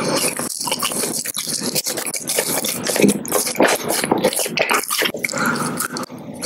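Close-miked chewing of a sugar-coated gummy candy: a dense, continuous run of small wet clicks and crackles from the mouth.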